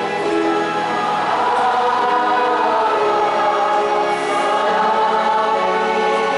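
Choir singing a slow sacred song, with long held notes.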